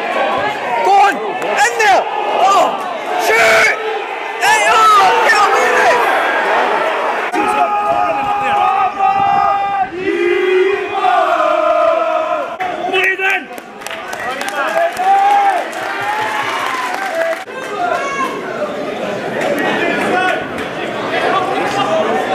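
Football crowd shouting and chanting, many voices overlapping, with a sung chant held for a few seconds about halfway through.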